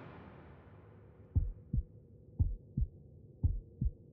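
Heartbeat sound effect: three low double thumps, lub-dub, about a second apart, after the tail of the music dies away.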